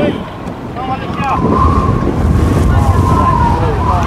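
Wind buffeting the microphone with a heavy low rumble, over distant shouting from players and spectators at a soccer match, including one long drawn-out call.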